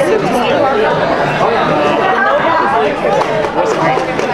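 Several people talking at once: overlapping conversational chatter of a group.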